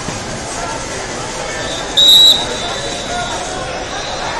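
Referee's whistle blown once, a short shrill blast of about half a second near the middle, signalling the start of the wrestling period. It sounds over the steady chatter of a crowded gym hall.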